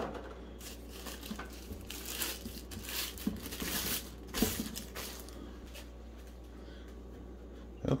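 Soft plastic protective wrap crinkling and rustling in a run of short bursts as it is pulled off a lamp's metal arm, fading to quieter handling after about five seconds.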